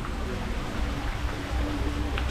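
Steady low outdoor rumble with an even background hiss during a pause in talk, and a faint steady hum in the second half.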